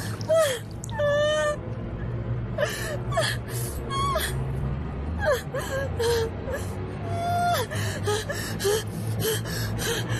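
A person gasping for breath and whimpering, with short, high, wavering cries between rapid breaths, over a low droning film score.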